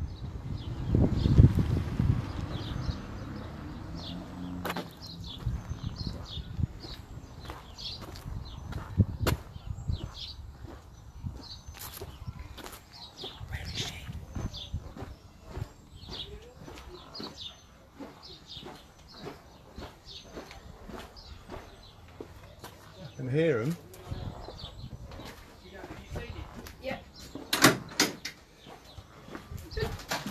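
Quiet wait in a parked car, with birds chirping now and then outside. A short voice comes in about two-thirds of the way through, and a door clunks near the end.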